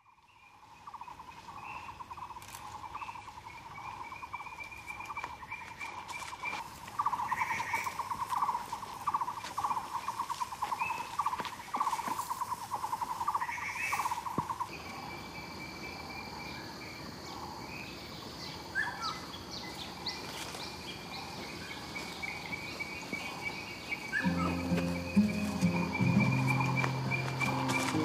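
Forest ambience of insects and birds: a pulsing trill and repeated chirps, joined about halfway by a steady high insect drone. Low, sustained music comes in about four seconds before the end.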